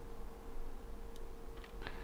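Quiet workbench room tone: a faint steady hum with a few faint ticks in the second half.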